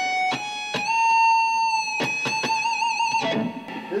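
Electric guitar playing a short lead phrase: a few picked notes stepping up into a long held note, then fresh notes near the middle and a note shaken with vibrato that stops a little after three seconds in.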